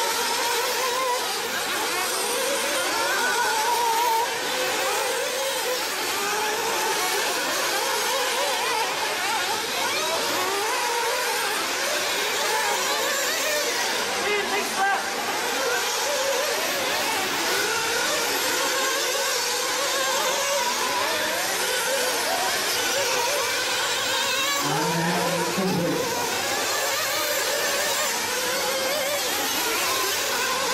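Several 1/8-scale nitro RC buggy engines, small two-stroke glow engines, revving up and down continuously as the buggies race around the track, their high-pitched notes rising and falling and overlapping.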